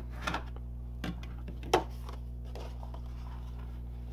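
A plastic burnishing tool rubbing along the fold of a cardstock card base, heard as a few short strokes, the strongest just under two seconds in, over a steady low hum.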